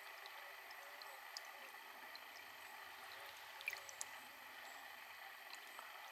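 Faint, steady trickle of spring water running from a metal pipe spout over a hand and a rock crystal, with a few small splashing ticks.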